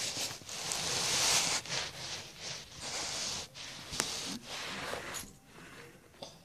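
Rustling and rubbing close to the microphone in uneven stretches, with a single sharp click about four seconds in.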